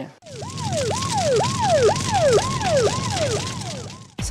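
Ambulance siren yelping: about two cycles a second, each leaping up to a high note and sliding back down, over steady street and traffic noise.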